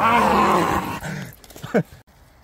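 A man's loud, drawn-out growl, voiced in a monster role, lasting just over a second. It is followed near the end by a short, sharp cry that falls in pitch.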